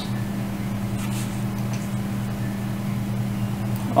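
A steady low hum, like a small machine or appliance running in the room, with a couple of faint light rustles.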